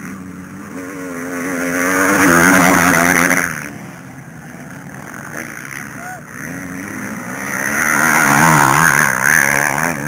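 Motocross bikes racing on the dirt track, their engine note rising and falling as they rev and shift; the sound swells twice as bikes come past, about two seconds in and again near the end.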